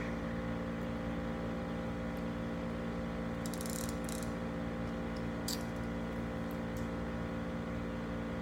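Steady humming whir of a room humidifier, with a few brief clicks about halfway through.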